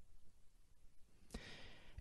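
Near silence in a pause of a man's speech, with a faint breath drawn in through the mouth in the last half-second before he speaks again.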